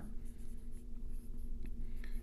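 Dry-erase marker writing on a whiteboard: a run of short, faint strokes over a low steady hum.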